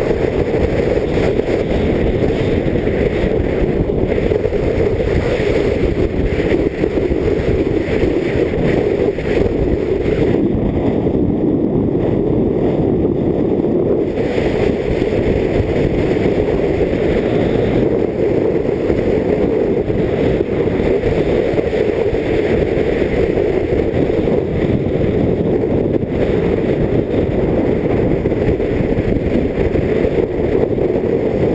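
Loud, steady rumble of wind rushing over an action camera's microphone as the skier runs downhill at speed. The higher hiss thins out for a few seconds near the middle.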